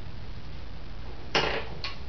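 Plastic and metal parts of a Harbor Freight pick-up gripper's handle clicking as a metal piece is worked off its pivot pin: a short clatter about a second and a half in, then a brief second click.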